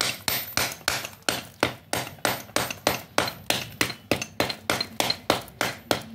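Small hammer striking a pile of soft black slate pieces over and over, about three strikes a second, crushing the slate as it splits into layers.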